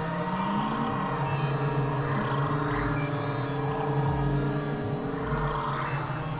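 Experimental synthesizer drone music: several steady held tones layered over a low tone that slides up and down in pitch, at a constant loudness.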